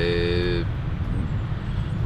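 Low, steady rumble of road traffic, with a horn-like steady tone sounding once for about a second at the start.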